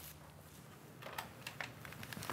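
Faint computer keyboard typing: a few scattered key clicks start about a second in, over quiet room tone.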